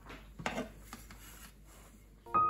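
A metal baking tray holding a foil tray of food set down on a cork trivet: a short clatter about half a second in, then a lighter knock just before a second.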